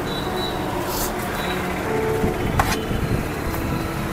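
Steady roadside traffic noise, with two short clicks about a second and two and a half seconds in.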